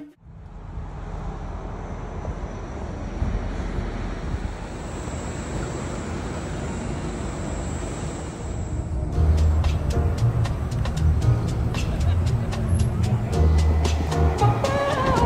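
Steady rumble and hiss of a moving vehicle for about nine seconds, with a faint high whine in its later part. Then background music with a steady bass beat comes in.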